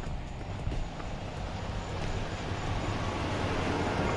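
Steady low rumble of nearby vehicles, growing a little louder toward the end, with faint footsteps on asphalt.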